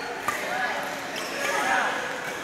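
A badminton racket striking a shuttlecock, one sharp crack about a quarter second in, during a multi-shuttle feeding drill, with reverberant sports-hall background of voices and movement.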